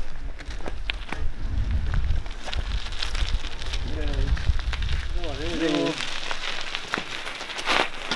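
Bicycle rolling over gravel, a fine crunching and crackling, over a low rumble that stops about two-thirds of the way in. A couple of brief spoken words and a short hiss near the end.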